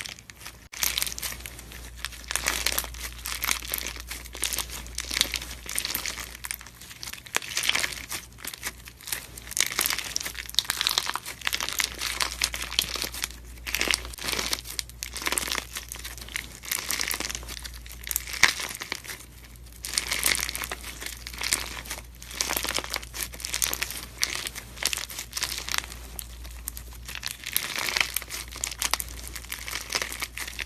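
Clear slime squeezed, folded and stretched between the fingers, giving a dense run of fast crackles and pops that swell and ease with each squeeze.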